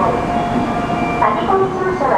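Station platform sound beside a stopped N700A Shinkansen train: a steady hum and hiss, with voices over it.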